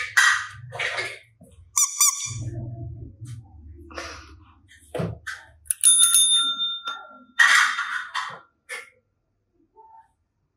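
A dome-shaped tap service bell (a pet training bell) struck once by a finger a little past halfway, giving a single ding that rings on for about a second and a half. Around it come short bursts of rustling and knocking.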